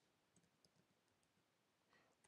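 Near silence, with a few very faint clicks of computer keyboard keys being typed.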